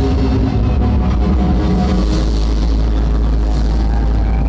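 Live instrumental band playing on stage, electric guitar over a heavy low rumble. Held notes carry through the first second or so, then give way to a denser, noisier wash of sound.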